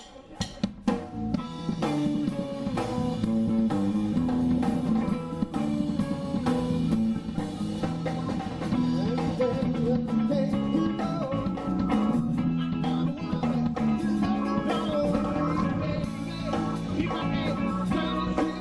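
Live band music on keyboard and drum kit: a few sharp drum hits open the number, then the full band plays on with a steady beat.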